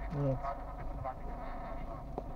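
Steady buzzing hum inside a stationary car's cabin, with a brief bit of voice near the start.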